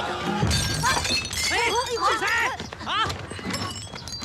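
Glass shattering with a sudden crash about half a second in, its high tinkling trailing off over the next second. Several children's voices then shout over one another.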